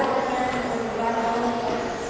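Several electric 1/10-scale RC touring cars with stock-class brushless motors racing around the track, their motors making a steady, slightly wavering whine.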